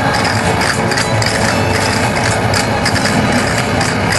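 Live folk dance music with a steady drone-like tone underneath and a regular beat of sharp percussive clicks.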